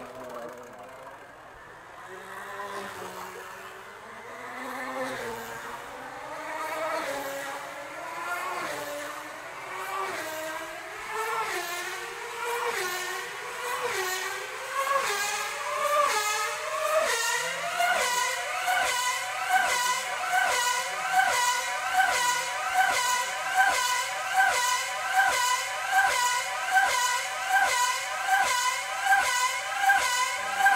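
5 cc two-stroke tethered speed model car running laps of the tether track, its high engine note climbing steadily as it builds speed for the first half, then holding at full speed of about 290 km/h. The pitch swoops up and down each time the car passes, a little more than once a second.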